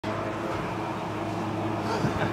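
5x10 Avid CNC router running, its gantry traversing along the table with a steady, even mechanical tone from the drive motors.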